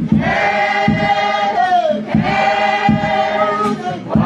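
Mixed choir of women and men singing together, holding two long phrases that each slide down in pitch at the end, over a steady low beat.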